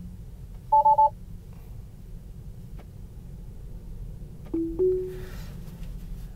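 Tesla Model 3 cabin chimes: three quick two-tone beeps about a second in, then a two-note chime rising in pitch near five seconds in as Autosteer engages, over steady low road noise.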